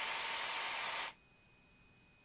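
Steady static hiss from an aviation headset intercom's open microphone channel, cut off abruptly about a second in as the intercom's squelch closes.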